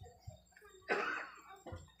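A man coughs once into a microphone, about a second in, a short noisy burst that fades quickly, in an otherwise quiet pause.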